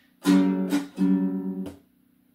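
A ukulele strummed on a G7 chord: a few quick strokes, the chord ringing between them, then damped to silence shortly before two seconds in.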